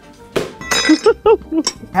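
A sharp clink with a brief high ringing, like glass or crockery struck, followed by a man's short laugh.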